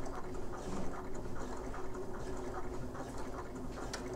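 Faint rustling and small clicks of hands handling fabric at a sewing machine, over a steady low hum.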